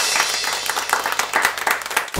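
Applause: many hands clapping densely and irregularly, dying away near the end.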